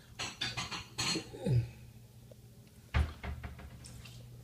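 Homebrewing gear being handled on a table: a run of rattling clicks and clatter in the first second, a short falling squeak-like tone, then a sharp knock with a dull thud about three seconds in, followed by a few lighter taps.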